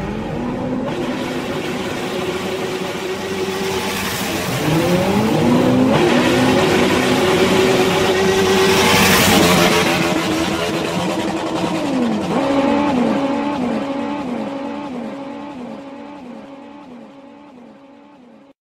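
An engine revving and accelerating, with a rush of noise building to a peak in the middle. After that comes a quick run of short rising revs that fades away towards the end.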